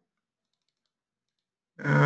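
Near silence with a few faint, small clicks, then a man's voice starts speaking near the end.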